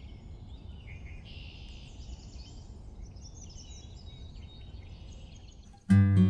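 Small birds chirping and calling over a steady low outdoor rumble. An acoustic guitar starts playing right at the end.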